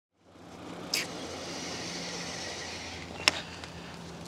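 Steady outdoor background: a low hum under a high hiss, broken by a sharp click about a second in and another near the end.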